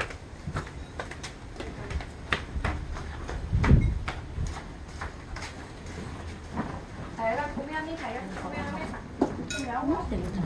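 Scattered clinks and knocks of plates and utensils at a meal table over a steady low wind rumble on the microphone, with a heavy low thump about four seconds in. A voice talks faintly in the background near the end.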